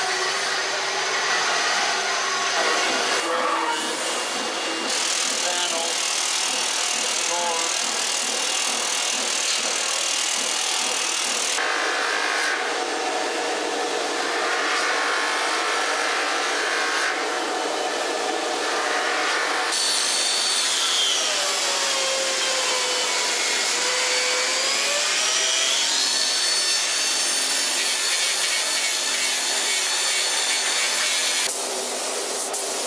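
Metalworking shop machinery in a series of abrupt changes: a band saw cutting a steel beam at the start, then other cutting and finishing machines on steel and stainless stock. Between about 20 and 26 seconds a whining tone falls and then rises again.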